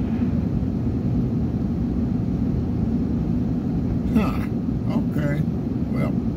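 Steady road and engine rumble heard inside a vehicle's cabin while driving at highway speed. A few words are spoken about four seconds in.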